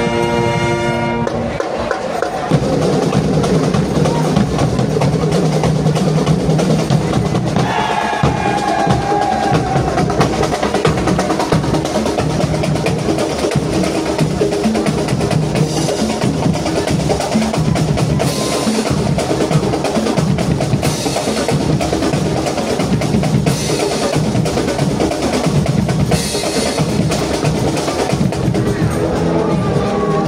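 A marching band's brass chord cuts off about a second in, and the drum line carries on alone with a steady, busy passage of snare rolls and bass drum beats.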